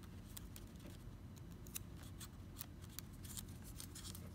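Faint, scattered crisp ticks and rustles of scrapbook paper strips being bent and pressed together by hand, over a low steady hum.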